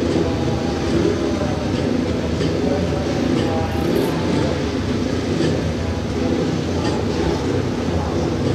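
Speedway motorcycles' 500 cc single-cylinder methanol engines running in a race, heard as a steady engine drone.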